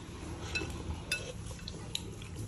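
Metal spoon clinking lightly against a ceramic soup bowl: a few small, separate clinks, one or two with a short ring.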